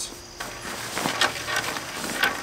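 A camping quilt being pushed loose into a backpack: irregular rustling and crinkling of nylon fabric. A steady high insect chirr runs behind it.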